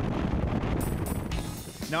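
Bass boat's outboard motor running under way at speed, heard as a steady rush of engine, hull and wind noise on the microphone.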